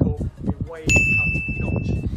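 A single high, bell-like ding that strikes suddenly about a second in and rings on steadily for about a second.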